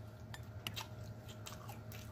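Close-miked chewing of a mouthful of corn dog: soft, irregular wet mouth clicks and smacks, several in the two seconds, over a steady low hum.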